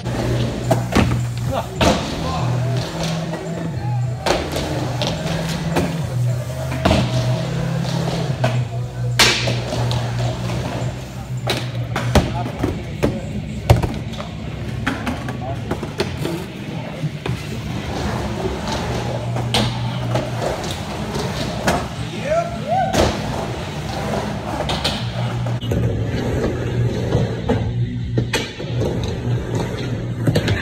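Music with a bass line that steps from note to note, over a skateboard on a wooden vert ramp: wheels rolling and repeated sharp clacks and thuds of the board.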